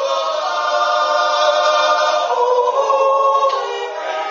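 Swiss mixed yodel choir singing a wordless Jutz (natural yodel) a cappella: long held chords of women's and men's voices, with the harmony moving to new notes about two seconds in and again near the end.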